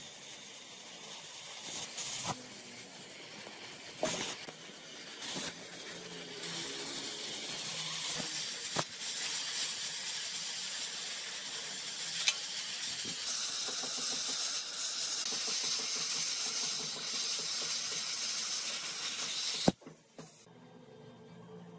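Oxy-fuel cutting torch hissing steadily as it burns through the steel motorcycle frame, getting louder as it goes, with a few sharp clicks and cracks along the way.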